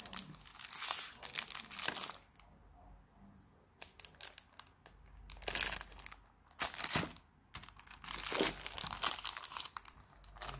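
Clear plastic packaging crinkling as stationery packs are handled: a long rustle for about two seconds, then a quieter gap and several shorter bursts of crinkling.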